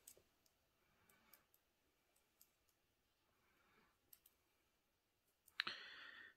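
Faint, sparse clicks of metal circular knitting needles tapping together as stitches are worked, with a breath near the end.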